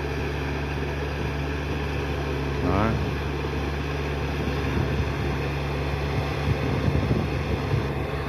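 Yanmar 494 tractor's diesel engine running steadily under load, driving on cage wheels through a flooded, muddy rice paddy while tilling.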